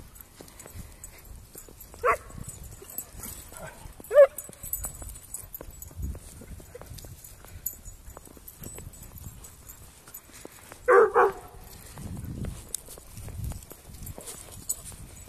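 Dogs barking in play: a short bark about two seconds in, a louder one about four seconds in, and two quick barks about eleven seconds in.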